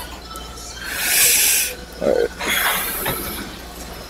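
A man breathing out hard, a long loud breathy blow about a second in, followed by a short hummed sound and a second, thinner breath.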